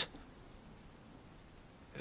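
Faint, steady rain falling.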